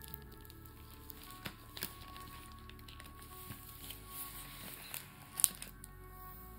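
Clear plastic trading-card binder sleeves being handled by fingers with long nails, giving scattered short clicks and soft crinkles, the sharpest about five and a half seconds in. Soft background music plays throughout.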